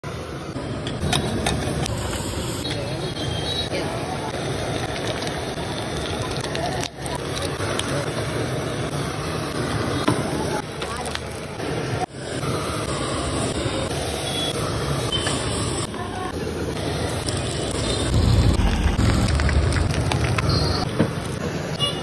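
Busy street ambience at a roadside food stall: a steady wash of background voices and street traffic noise, swelling with a louder low rumble near the end.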